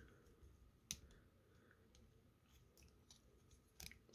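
Mostly near silence, with one click about a second in and a few faint ticks near the end: the plastic parts and joints of a Transformers Kingdom Rattrap action figure clicking as they are handled and popped into place during transformation.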